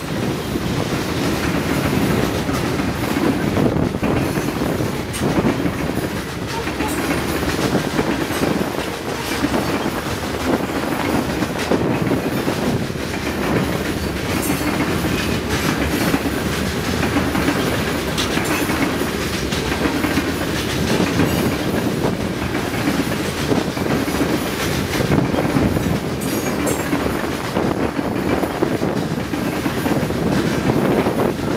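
Freight train of covered hopper cars rolling past at speed: steel wheels running on the rails, steady throughout, with some clicking.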